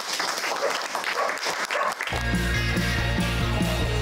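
Audience applauding, and about halfway through a loud music sting with a deep bass cuts in over the clapping.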